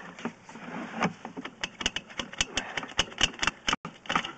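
Sewer inspection camera being pushed down a 3-inch ABS sewer line: an irregular run of sharp clicks and rattles that comes faster and thicker in the second half.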